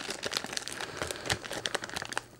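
Packaging crinkling as it is handled, an irregular run of small crackles and clicks.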